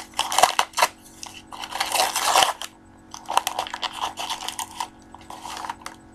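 Packaging being handled: a yellow padded mailer and its wrapping crinkling and rustling in several bursts, with sharp clicks, as a small box is pulled out.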